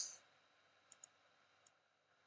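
Near silence with a few faint computer mouse clicks: a quick pair about a second in and a single click a little later.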